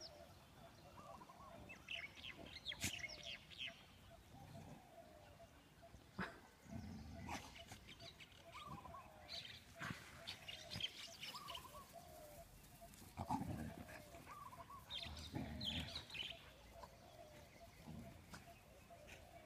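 Faint outdoor sounds of dogs playing on grass, with short bird calls repeating every second or so and a few brief low sounds from the dogs.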